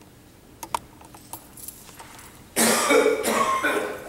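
A person coughing hard: a loud, rough fit that breaks out suddenly about two and a half seconds in and lasts just over a second, in two bursts. Before it, a few faint small clicks.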